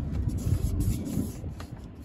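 Low, uneven rumbling with a few faint clicks: handling noise from a handheld phone being moved about, fading toward the end.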